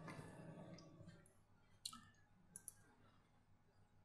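Near silence, with about three faint, short clicks of a computer mouse as browser tabs are switched.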